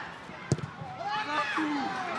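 A single sharp thud of a football being kicked, about half a second in, followed by players shouting on the pitch.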